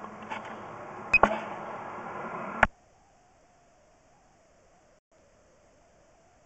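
Steady background hiss with a few sharp clicks as a sewer inspection camera's push cable is fed down the pipe. The sound cuts out abruptly about two and a half seconds in.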